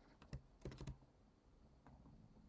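A few faint computer keyboard key presses and clicks, bunched in the first second: keys and a mouse click as a number is pasted into a field and a button is clicked.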